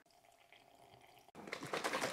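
Near silence, then about a second and a half in a rapid, dense rattle starts: a plastic shaker bottle being shaken hard to mix a powdered drink.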